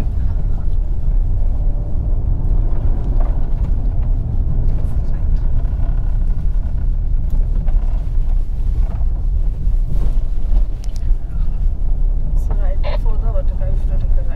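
Inside the cabin of a 2023 Skoda Kodiaq driven fast over a rough dirt track: a loud, steady low rumble of tyres and suspension working over the rutted ground, with the car's engine running underneath.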